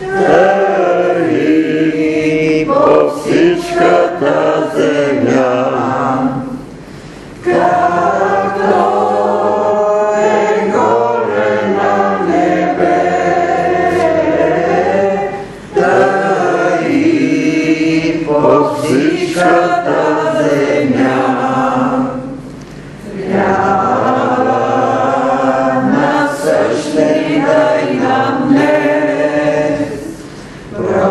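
A choir of voices singing a hymn. It sings in phrases, with a short break about every seven or eight seconds.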